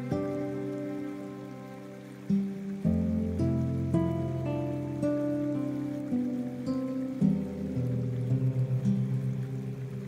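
Slow, gentle guitar music, notes and chords plucked a few at a time and left to ring, over a soft steady sound of rain.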